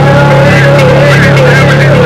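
Harsh noise / power electronics music: a loud, heavily distorted low drone held without a break, with wavering squealing tones above it and a crackling hiss on top.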